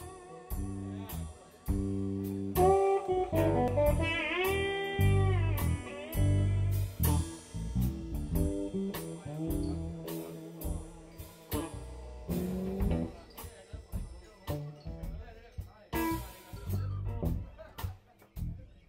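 Live blues band playing an instrumental intro: electric guitars over drum kit and bass guitar with a steady beat, the lead guitar's notes bending and gliding in pitch.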